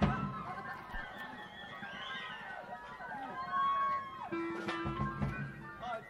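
Electric guitars noodling loosely between songs on a live rock concert recording, with sustained notes and no song under way. About three and a half seconds in, one note bends and slides down; a steady lower note is held near the end.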